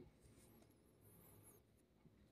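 Near silence: faint outdoor background with faint, high-pitched wavering chirps during the first second and a half.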